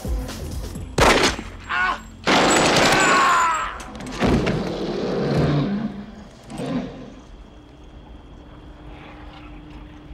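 Submachine gun fire in a film action scene, mixed with the score: a sharp shot about a second in, then a longer loud burst of fire and further loud hits over the next few seconds. The sound dies down after about seven seconds into a low, steady background.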